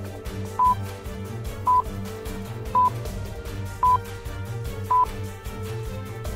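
Stopwatch sound effect of a countdown timer: five short, identical electronic beeps about a second apart over steady background music, counting off the time to think about the answer.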